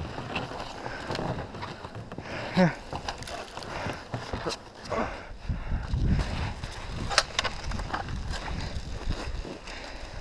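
Boots shuffling and crunching in snow, clothes rustling and scattered knocks and clicks from gear being handled, with a short low rumble about six seconds in.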